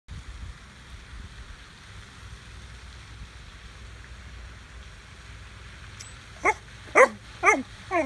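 Black Labrador retriever puppy giving its vocal 'hello': four short, pitched barks in quick succession, about two a second, starting near the end, each bending down in pitch. Before them, only a low steady background rumble.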